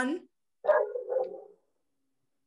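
A dog barking twice in quick succession.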